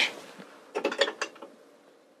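A handful of short metal clicks and scrapes as an adjustable wrench is fitted onto and turned against the steel nut of a wall-display mounting bolt, tightening it into its slat. The clicks come in a cluster about a second in, then stop.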